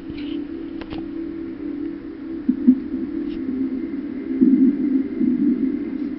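Soundtrack of a slow-motion clip playing through a television speaker: a low, steady droning tone, swelling louder and rougher twice, briefly near the middle and again for about a second and a half near the end, as the giant water balloon bursts on screen.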